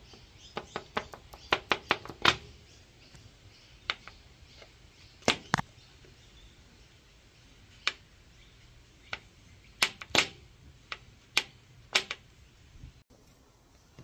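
Scattered sharp clicks and taps of aluminium crankcase halves being handled on a glass tabletop. There is a quick run of them in the first couple of seconds, then single or paired taps every second or so.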